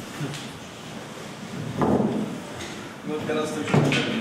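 Indistinct voices of people in a hall, with a sudden knock about two seconds in and a louder voice near the end.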